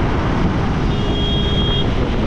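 Wind rush on the microphone and road noise from a motorcycle ridden at about 40 km/h. A high-pitched beep lasting about a second sounds midway.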